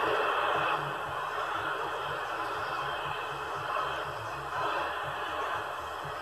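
Static hiss from a CRT 7900 CB transceiver's speaker, tuned to 27.225 MHz in AM, with a faint distant station barely audible under the noise. The hiss drops a little about a second in.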